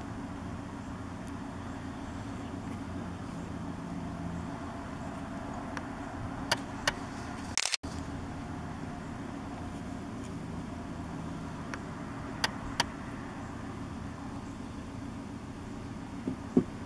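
Steady low rumble of an idling vehicle engine, with a few sharp clicks in pairs about six seconds in and again about twelve seconds in.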